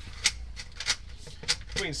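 Sharp clicks about 0.6 s apart over a low rumble, from the push cable of a sewer inspection camera being fed into the line, with a man starting to speak near the end.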